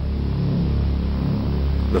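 A low, steady rumble with a faint wavering tone above it.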